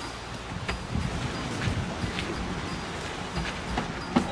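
A parked SUV's engine running with a steady low rumble, with a few light clicks and knocks as its doors are opened.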